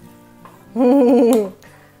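A short burst of laughter: one voiced, pulsing laugh lasting under a second, about midway through, over faint background music.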